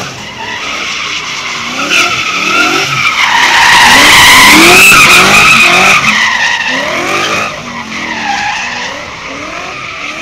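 A car being driven sideways with its tyres squealing, over an engine revving up and down again and again. It is loudest about four to six seconds in.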